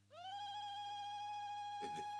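A woman's long, high-pitched ululation (zaghrouta), the celebratory trilling cry, rising at the start and then held on one steady note.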